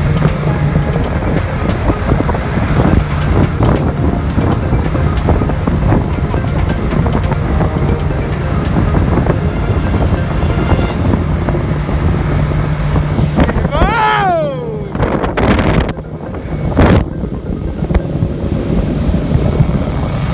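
Suzuki 90 outboard motor running steadily at speed, with wind buffeting the microphone and water rushing past the hull. About two-thirds of the way through, a falling, wavering cry sounds over it.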